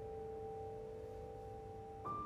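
Grand piano notes left ringing: two or three soft, steady tones held over from a chord and slowly fading, with no new note struck.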